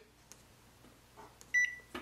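Epson WorkForce WF-2860 printer's touchscreen control panel giving one short, high beep about a second and a half in: the key-press tone confirming that a menu option was tapped.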